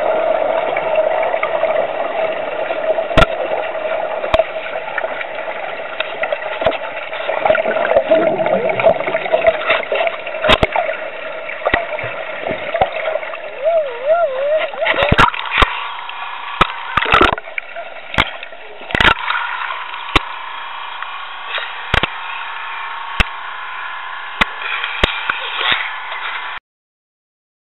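Muffled underwater sound around a small one-man submarine in a pool: steady water noise with a hum that wavers briefly about 14 seconds in and then drops away. After that come a dozen or so sharp knocks, scattered over the rest of the stretch.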